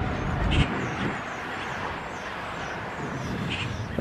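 Road noise from a vehicle passing on the highway, a steady rush of engine and tyres that eases off over the first couple of seconds, with faint high chirps above it.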